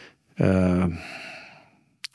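A man's voiced sigh during a pause in speech: a held "ahh" of about half a second that trails off into breath and fades away near the end.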